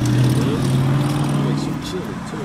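Car engine running, a steady low drone heard from inside the cabin.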